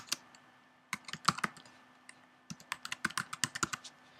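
Typing on a computer keyboard: a short run of key clicks about a second in, then a longer run in the second half, with a brief pause between.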